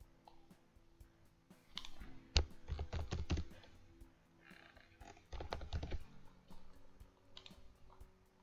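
Typing on a computer keyboard in two short bursts of keystrokes, about two seconds in and again about five seconds in, with a few scattered single clicks between.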